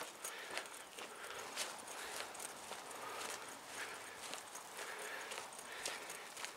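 Footsteps of a person walking, faint short steps about twice a second.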